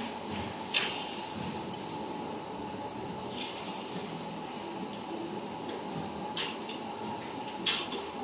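Steady indoor background noise with a faint constant hum, broken by a handful of short sharp clicks and knocks, the last one near the end the loudest.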